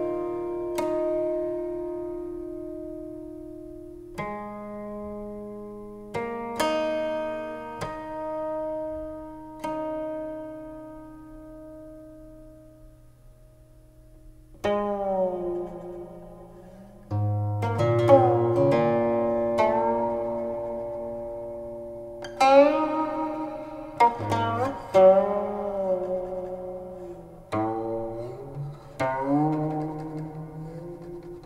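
A guqin, the seven-string Chinese zither, playing a slow solo piece. In the first half, single plucked notes are left to ring and fade. About halfway through come busier phrases whose notes slide up and down in pitch as the left hand glides along the string.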